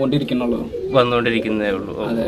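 Pigeon cooing, a Gaditano pouter with its crop inflated, louder from about a second in.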